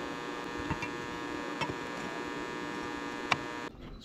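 A steady electrical buzzing hum with many overtones, broken by a few sharp clicks, the last and loudest near the end; the hum cuts off suddenly just before the end.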